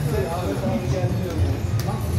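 Background chatter of several voices mixed with slot machine sounds as the reels spin, with a sharp click near the end.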